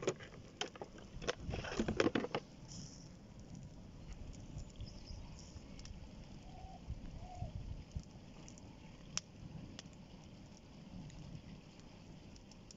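Open fire in a barbecue grill burning a heap of electrical cables and plugs, the insulation crackling and popping: a close run of sharp pops in the first two seconds or so, then scattered single pops over a low steady rush of flame.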